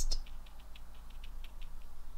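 Small round paintbrush dabbing and stroking on watercolour paper: a run of faint, quick ticks, about five or six a second.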